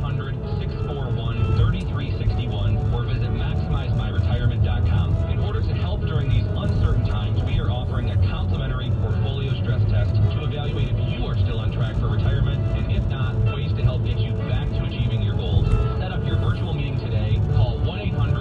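Car radio tuned to an AM news station playing a commercial, a voice over music, heard in the cabin over the steady low rumble of the car's road and engine noise.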